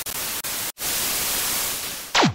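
Television static: a steady white-noise hiss, broken by a short dropout a little before one second in, sinking in level near the end.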